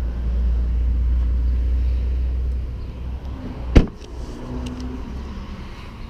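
A 2016 Ram 1500 Crew Cab's front door shut once, a single sharp thud a little under four seconds in. Under it is a low rumble on the microphone that fades after about two and a half seconds.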